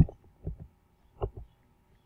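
A sharp low thump at the start, then two pairs of softer low thumps, about half a second and about a second and a quarter in.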